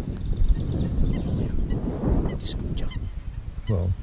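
Wind rumbling on the microphone, with a short run of faint bird calls a little past two seconds in.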